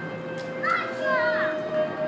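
A young child's high-pitched voice calling out briefly in the middle, over background music with long held notes.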